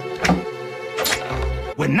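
Cartoon background music with sustained tones, punctuated by two sharp hits about a quarter second and a second in, and a low thud a little after that.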